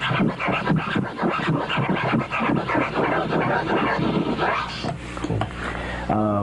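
Tear scratches on a vinyl record: a hand pushes and pulls the record under the turntable needle in quick strokes, each stroke broken by brief stops so it sounds like tearing. A rapid run of strokes that thins out near the end.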